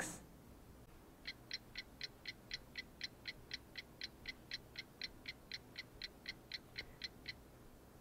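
Countdown timer sound effect: faint, even ticking at about five ticks a second, starting about a second in and stopping shortly before the end.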